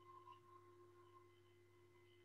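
Near silence: a faint steady hum made of a few constant thin tones.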